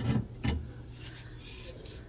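Wooden picture frame being handled and pulled out of a display cabinet: two light knocks in the first half second, then quieter handling noise.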